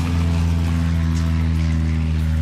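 A loud, steady low drone with overtones sets in sharply as the guitar music stops and holds unchanged.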